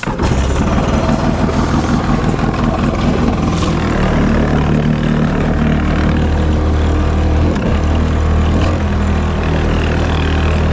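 Kawasaki 750 SXI Pro stand-up jet ski's two-stroke engine, fitted with an aftermarket Factory Pipe B-Pipe, running hard under throttle as the craft gets up to speed, with water rushing past the hull. The revs dip briefly about seven and a half seconds in, then pick up again.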